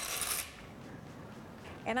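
Dry penne poured from a glass bowl into a pot of boiling water: a brief rattling rush that stops about half a second in, followed by a faint hiss.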